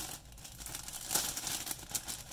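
Clear resealable plastic bags crinkling as they are handled, with a run of sharper rustles about a second in.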